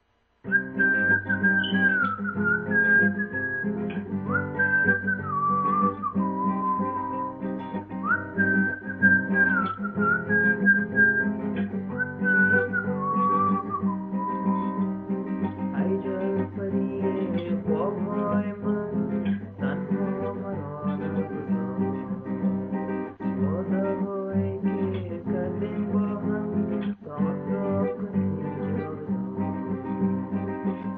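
Classical guitar played with the fingers, starting about half a second in, with a whistled melody gliding between notes over it for roughly the first thirteen seconds.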